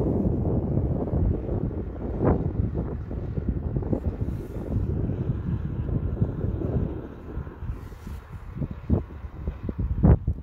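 Wind buffeting the microphone in an open field, an uneven low rumble that eases after about seven seconds, with a few brief knocks near the end.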